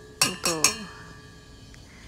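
A Microplane rasp grater tapped about three times against a stainless steel bowl to knock the lemon zest off it, each tap a metallic clink, with the bowl ringing on briefly afterwards.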